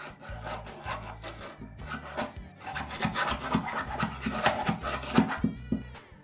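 Gritty scraping and rubbing of damp sand mixed with sodium silicate (water glass) as it is scooped and worked by hand, in a run of short strokes that grow louder about halfway through.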